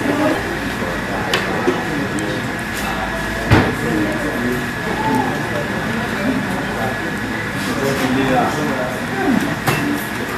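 Indistinct chatter of several people talking, over a steady low rumble and a faint thin whine. A single sharp knock comes about three and a half seconds in, where the rumble stops.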